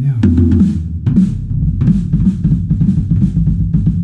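Acoustic drum kit played with a double bass drum pedal: a fast, even run of kick drum strokes starting about a second in, with snare or cymbal hits about three times a second over it.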